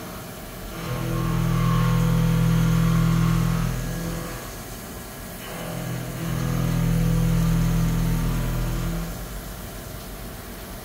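Haas VF-6 vertical machining center's spindle and cutter milling a part clamped in a vise. A steady humming tone swells up twice, for about three seconds each time as the cutter passes through the cut, and falls back to a quieter running sound between the passes.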